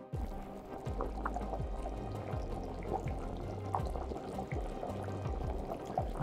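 Background music over the soft bubbling and popping of green peas simmering in water in a wok.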